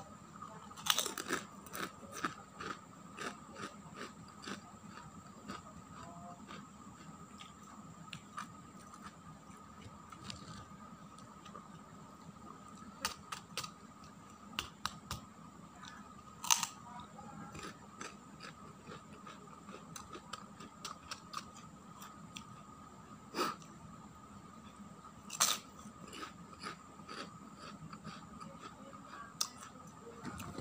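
Crisp fried kerupuk crackers being bitten and chewed close to the microphone: irregular sharp crunches, loudest about a second in, again about halfway and near three-quarters through.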